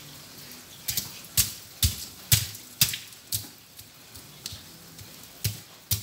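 Footsteps on a wet concrete path, a sharp slap about every half second, thinning out after the middle.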